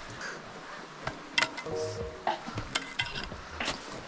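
Ice axe picks striking frozen waterfall ice, a few sharp clinking strikes about a second apart as the tool is swung and set.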